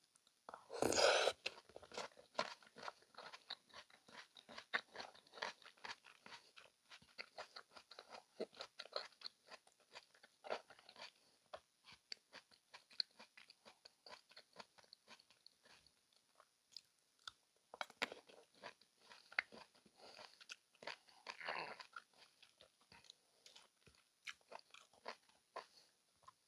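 Close-miked chewing of a piece of soft fruit: a louder bite and slurp about a second in, then many quiet, wet chewing clicks, with a few louder bursts of chewing later on.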